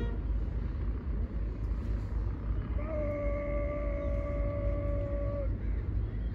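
A single long call held on one steady pitch for about two and a half seconds, starting about three seconds in, over a steady low outdoor rumble.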